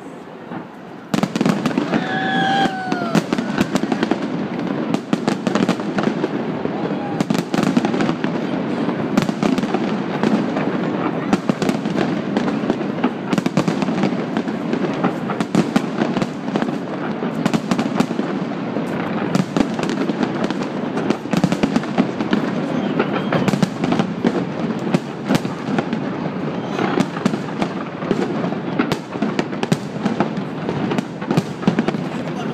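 Large fireworks display, one burst after another: dense crackling and rapid bangs overlapping without a break. The sound jumps up suddenly about a second in, with people's voices underneath and a short rising-and-falling call about two seconds in.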